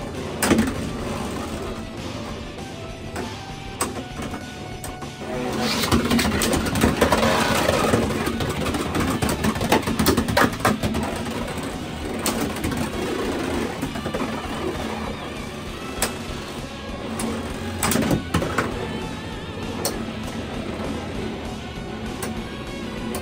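Beyblade X spinning tops running on a stadium floor, with a steady hum and sharp clacks as they collide, the clearest about half a second in, around ten to eleven seconds and around sixteen and eighteen seconds. A louder, rougher stretch of contact comes about six to eight seconds in.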